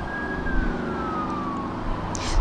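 Siren wailing: a single thin tone rises slightly, then falls in pitch from about half a second in. A low steady rumble runs underneath.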